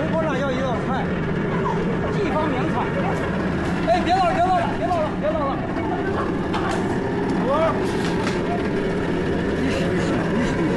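People talking in a busy street market over a steady low mechanical hum, with the voices loudest about four to five seconds in.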